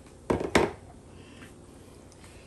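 Two quick wet handling noises close together near the start, from hands working herb seasoning into a raw whole turkey in a plastic bowl.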